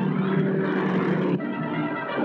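Old film soundtrack of a car on the road: a steady car engine drone under sustained background music, the held tones shifting about a second and a half in.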